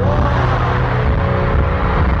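Loud live arena concert music with heavy bass and a long note that rises at the start and then holds for over a second.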